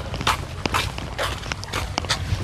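Footsteps of children in sneakers walking on a concrete walkway, a run of short, irregular steps.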